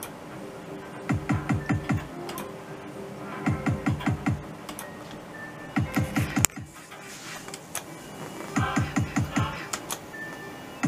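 Merkur Rising Liner slot machine spinning again and again, about every two and a half seconds. Each spin ends in a quick run of about five short low stop sounds, one per reel as the reels halt in turn, over the machine's steady electronic tones. There is a sharp click after the third spin.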